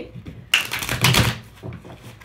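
A deck of tarot cards being shuffled by hand: a quick, dense rattle of cards flicking against each other, lasting about a second and starting about half a second in.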